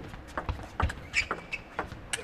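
A table tennis ball being hit back and forth in a rally, a quick series of sharp clicks as it strikes the rackets and bounces on the table.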